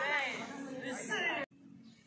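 Several people talking at once, with lively, rising and falling voices, cut off abruptly about one and a half seconds in, leaving a much quieter background.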